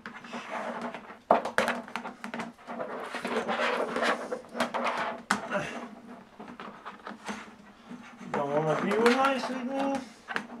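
A flexible translucent plastic sheet being bent and handled against an aluminium tube frame, making rustling and scraping with a run of sharp clicks and knocks. Near the end a person's voice makes a wavering, drawn-out sound for about two seconds.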